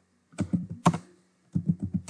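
Computer keyboard keys being typed: a handful of quick keystrokes in two short runs, the second near the end.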